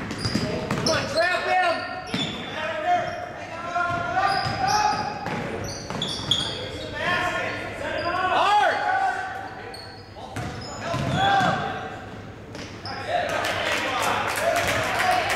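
Basketball game in a gym: a ball bounces on the hardwood floor, sneakers squeak in short chirps, and players and spectators call out indistinctly, all echoing in the large hall.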